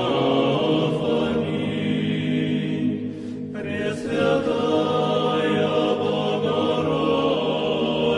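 Music: voices chanting together in long held notes, with a brief break between phrases about three seconds in.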